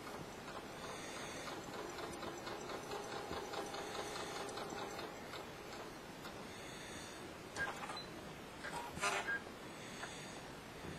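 Home sewing machine running a straight stitch through two layers of cotton fabric: a fast, even ticking of the needle that stops about halfway through. A few louder, sharp sounds follow near the end as the fabric is handled.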